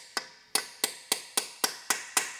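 Hammer striking a punch to drive an unseated dowel pin down into a gearbox case, so that it engages both case halves: seven sharp, evenly spaced metal taps, a little under four a second.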